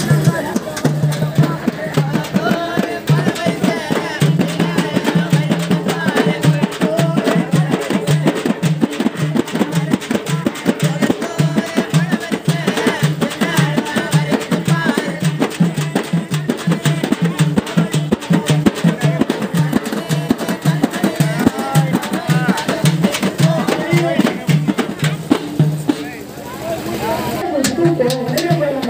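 A festival drum band of bass drums and snare-type drums plays a fast, steady folk rhythm while a woman sings an Irular folk song into a microphone. The drumming drops away near the end.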